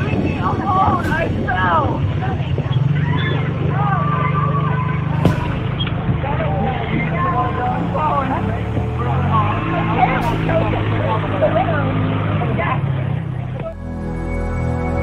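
Indistinct voices calling and chattering outdoors over a steady low hum, muffled in tone. The hum shifts in pitch about nine seconds in.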